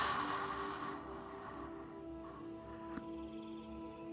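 Soft ambient meditation music of sustained drone tones, playing quietly. In the first second a breathy exhale fades away, and there is one faint click about three seconds in.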